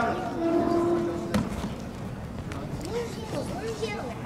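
Men shouting instructions across a gymnasium, with one drawn-out call in the first second and more shouts near the end, echoing in the hall. One sharp smack about a second and a half in.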